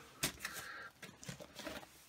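Faint rustling of a record's card backing in its plastic sleeve being handled, with a light tap about a quarter second in and a few soft ticks after.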